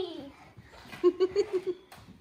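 A child giggling: a quick run of about six short, same-pitch bursts about a second in, after a voice trails off at the start.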